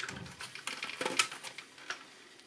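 Light handling noise of a thin plastic speedometer dial face being slid out from under the needles of a car instrument cluster: faint rubbing with a few scattered small ticks and clicks.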